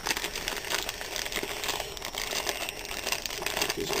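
Irregular rustling and crinkling with many small clicks: items from the unboxing being handled close to the microphone.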